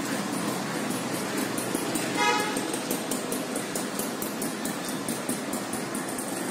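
Steady street traffic noise with one short vehicle horn toot about two seconds in.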